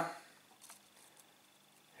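Near silence: quiet room tone, with the end of a spoken word fading at the start and one faint click a little under a second in.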